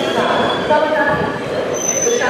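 Busy railway platform ambience: a crowd's voices over the rumble of a train, with a thin high squeal near the end.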